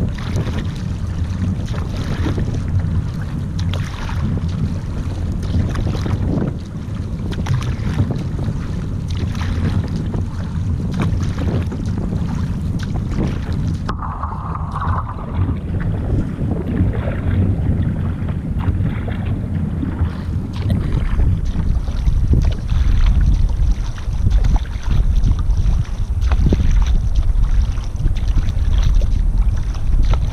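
Surfski paddle strokes, the blade catching and splashing in the water on alternate sides in a repeated rhythm, with water rushing along the hull. Wind buffets the microphone throughout, with a low rumble that grows heavier about two-thirds of the way in.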